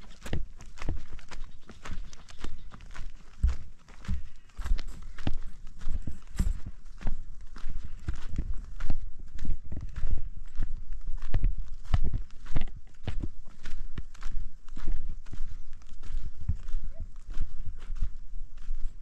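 Footsteps on a dry, stony dirt track: an irregular run of steps from people walking, several a second.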